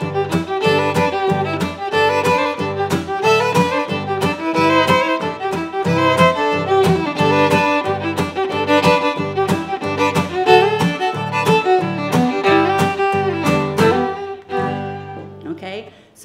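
Cajun fiddle and acoustic guitar playing a two-step. The guitar keeps a simple, steady boom-chuck strum on closed chords under the fiddle melody, and the tune stops shortly before the end.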